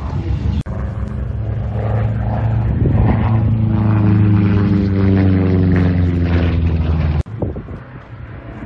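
Republic P-47 Thunderbolt's Pratt & Whitney R-2800 radial engine droning on a flyby, growing louder to a peak about halfway and then dropping in pitch as it passes. The sound breaks off abruptly twice, under a second in and near the end.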